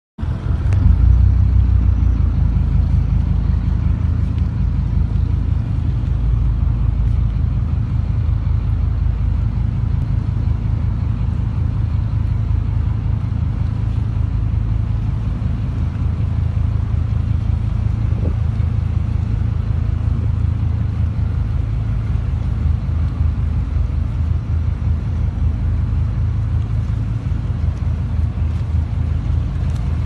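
Steady low rumble of a small boat's engine running under way, heard from on board.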